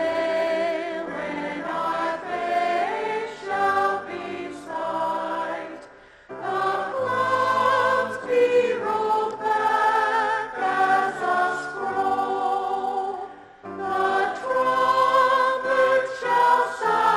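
Mixed choir of men and women singing a sacred anthem with piano accompaniment. The choir sings in long phrases, with a brief break about six seconds in and another near the end.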